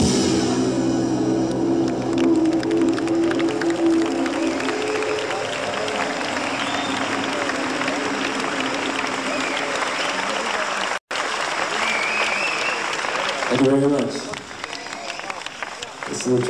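An audience applauds and cheers as the band's last sustained chord fades away in the first few seconds. The recording drops out for an instant about eleven seconds in, and near the end a man's voice comes over the PA as the clapping dies down.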